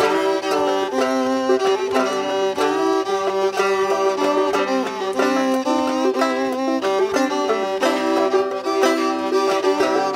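Fiddle and banjo playing an old-time dance tune together, an instrumental break with no singing: the bowed fiddle carries the melody over the banjo's steady plucked rhythm.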